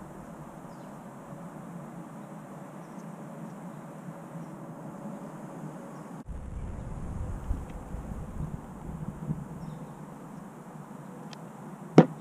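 Quiet outdoor background noise. From about halfway in, a low wind rumble on the microphone joins it. A few faint clicks of the metal switch and wires being handled during soldering.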